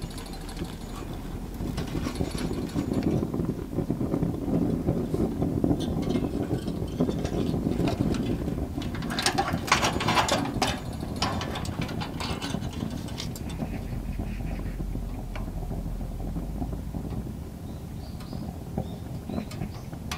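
Fire burning in a glass-fronted Cyrus wood stove, a steady low rumble with crackling. A compressed sawdust log has just been loaded. A busier burst of sharp crackles and clatter comes around the middle.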